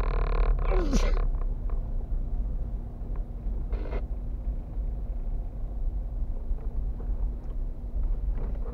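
Car driving slowly along a rough road, heard from inside the cabin as a steady low engine and road rumble with a faint steady hum. In the first second come loud, short calls falling in pitch over a held, many-toned sound, and a brief hiss comes near the middle.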